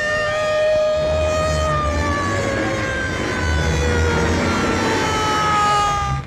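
Dramatic film background score: several sustained, wailing tones sliding slowly downward together over a low rumble that swells and fades.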